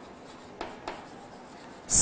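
Chalk writing on a blackboard: faint scratching strokes, with two sharper chalk taps about half a second and nearly a second in.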